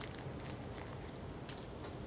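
Faint, steady sizzling of onions, celery, carrots and tomato paste cooking down in a hot pan, with a few soft crackles.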